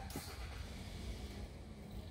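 A motor vehicle going by: a steady low rumble with a rushing hiss that sets in at the start and fades toward the end.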